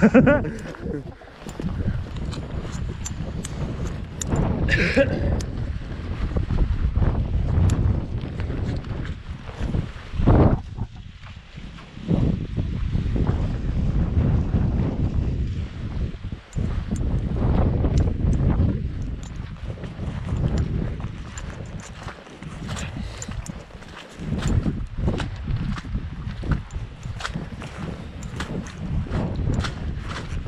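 Wind buffeting the camera microphone in uneven gusts, with the knock of footsteps walking over rough grass and stones.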